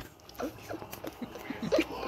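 Low-level room sound: faint, broken-up voices in the background with a few small knocks and rustles.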